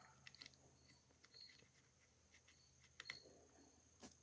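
Near silence with a few faint small clicks, from a brass nut being turned off a phonograph motor's bearing by hand and set down.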